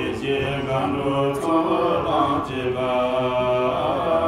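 Tibetan Buddhist monks chanting a puja liturgy together, a steady sustained group recitation with several voices held on long tones.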